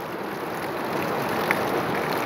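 Heavy monsoon rain pouring, with runoff streaming off a roof edge: a steady hiss of rain that swells slightly, with one small tick about one and a half seconds in.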